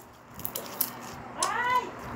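A cat meowing once, a short call that rises and then falls in pitch, about one and a half seconds in.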